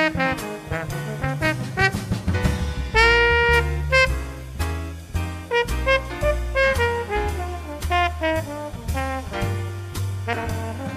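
Swing-style jazz band playing live: a trombone solo line over upright bass, piano and drums, with one note held briefly about three seconds in.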